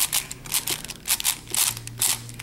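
Shengshou 6x6 speed cube's plastic layers being turned by hand, giving a quick run of clicks and clacks.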